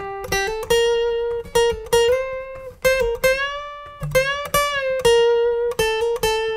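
Steel-string acoustic guitar playing a single-note lead line high on the B string: plucked notes linked by hammer-ons and pull-offs, with string bends that push the pitch up and let it back down between about two and five seconds in.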